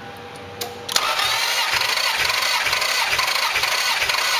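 Starter motor cranking a 1997 Toyota Supra twin turbo's 2JZ-GTE inline-six over for a compression test of cylinder 3. A click about a second in as the starter engages, then a steady cranking whir with a regular pulse about four times a second.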